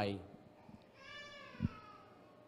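A faint, high-pitched drawn-out cry, about a second long and slowly falling in pitch, with a short knock partway through it.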